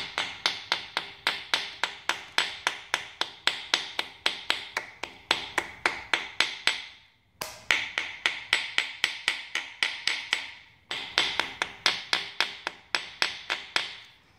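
Hammer lightly tapping masking tape down onto the edges of a small-block Chevy V8's cast-iron block, quick taps about four a second in three runs with brief pauses about halfway and three-quarters through. The tapping presses the tape against the edges so it cuts cleanly along them for masking before paint.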